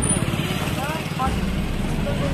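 Young male voices talking briefly in Hindi over a steady low rumble.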